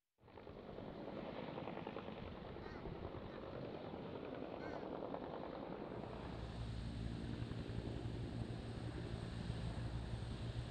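Helicopter noise: a steady rush of rotor and engine that fades in at the start, with a deeper steady hum and a thin high whine coming in about six seconds in.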